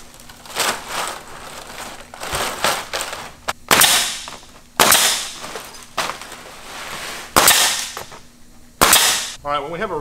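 Pneumatic coil nailer firing four times, sharp shots with a short hiss of air after each, spread over the second half, as nails are driven through synthetic thatch shingles. Before them, softer rustling of the plastic thatch strands as a shingle is laid in place.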